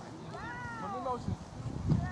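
A high voice on the sideline lets out one drawn-out wordless call, rising and then falling in pitch, over low outdoor rumble. A short loud knock comes just before the end.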